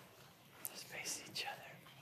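Faint whispered speech: a few hushed words with sharp hissing 's' sounds near the middle.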